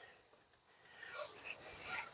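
Heavy rope being pulled and wrapped around crossed wooden poles for a lashing: a faint, scratchy rubbing and rustling that starts about a second in.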